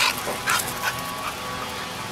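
Boxer dog giving about four short, sharp yips in the first second and a half, each fainter than the last, eager for a ball about to be thrown.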